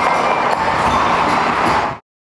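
Skate blades scraping and carving the ice of a rink, a steady noise that fades out quickly near the end.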